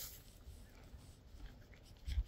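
Faint rustling of dry hay as a pony's lips take it from a hand.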